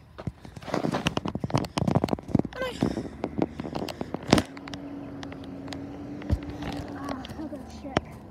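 Garbage truck working a wheelie bin: a run of rattling knocks and clatter ending in one loud bang, then a steady low hum for about three seconds.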